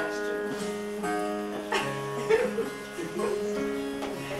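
Nylon-string classical guitar being tuned: single notes and pairs of strings plucked and left to ring while the pitch is adjusted.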